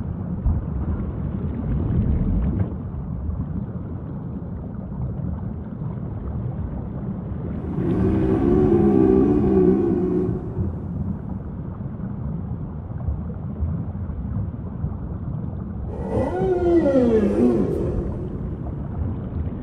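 Humpback whale song over a steady low rumble of background noise. A wavering, warbling call comes about eight seconds in and lasts a couple of seconds, and a moan that falls and then rises again comes near the end.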